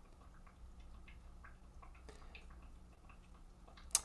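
Quiet pause with a steady low electrical hum and faint, irregular small clicks, and one sharper click near the end.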